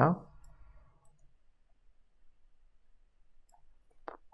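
A few faint, scattered computer mouse clicks, following the end of a spoken word at the very start.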